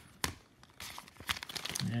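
Trading cards and plastic card holders being handled: a sharp tap about a quarter second in, then a run of crisp clicks and rustles.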